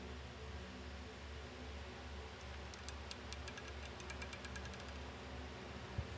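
Roulette ball rattling over the spinning wheel's pocket frets as it slows: a quick run of light clicks, about seven a second, from about two and a half seconds in until about five seconds, over a steady low hum.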